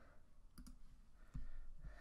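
A few faint clicks and soft low knocks, about four in two seconds, the loudest a little past the middle.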